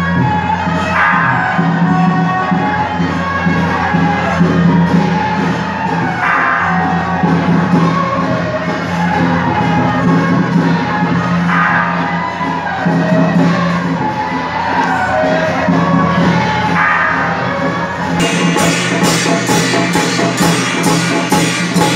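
Taiwanese temple procession music: a held melody over a steady low drone, with some crowd shouts. Near the end it changes to hand cymbals and drums striking an even beat, about three strikes a second.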